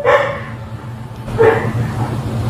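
A woman's short crying sobs, two of them about a second and a half apart, over a steady low hum.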